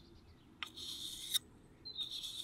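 Wet 1000-grit sharpening stone drawn along the inner side of a secateur blade, a steel-on-stone rub. One stroke of under a second begins about a third of the way in, and the next begins at the very end.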